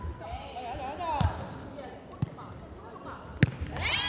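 A jokgu ball being kicked and bouncing on the court during a rally: three sharp thuds about a second apart, the loudest near the end. Voices call out faintly in the background.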